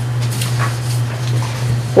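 A steady low hum with faint room noise and a couple of soft brief sounds.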